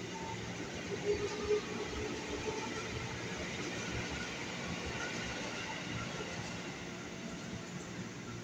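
Steady hum of a stationary ex-JR 205 series electric commuter train standing at the platform with its doors open, with a brief higher tone about a second in.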